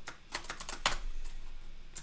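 Typing on a computer keyboard: a run of irregularly spaced keystrokes.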